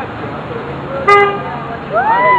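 A car horn gives one short honk about a second in, over street noise and background voices. Near the end, a person's voice starts a rising-and-falling whoop.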